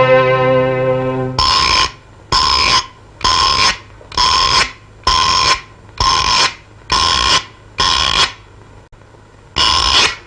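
Film-song music: a held orchestral chord dies away, then a bright, bell-like ringing tone sounds in short bursts about 0.8 s apart, nine times, and after a pause once more at the end.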